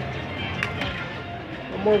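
Slot machine's free-spin bonus music playing with steady tones, and two short clicks a little over half a second in. A man's voice comes in near the end.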